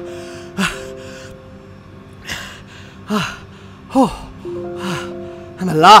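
A person gasping for breath about six times, roughly a second apart, the later gasps voiced and the last the loudest, like someone coming round after lying motionless. A held music chord sounds underneath.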